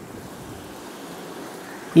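Faint steady background hiss with no distinct event.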